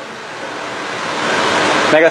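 A steady rushing noise with no pitch, swelling louder across about two seconds.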